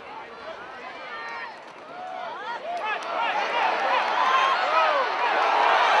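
Football stadium crowd shouting and cheering during a running play, many voices at once. It is moderate at first, then swells to loud cheering from about three seconds in as the ball carrier breaks downfield.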